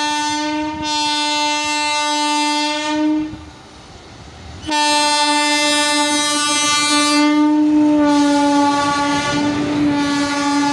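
Electric locomotive horn sounding in two long blasts, with a break of about a second and a half around three seconds in. Running noise from the passing train builds up under the second blast near the end.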